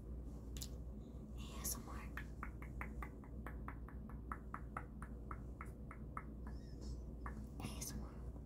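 Faint, quick tapping of fingertips on a hardened peel-off face mask, about four to five taps a second for several seconds, with a few soft rustles.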